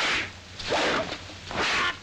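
Dubbed kung fu fight sound effects: a long staff swished through the air in about three quick bursts.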